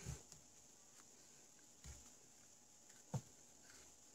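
Near silence, broken by a few light knocks and taps from tools and parts being handled on a workbench, the sharpest about three seconds in.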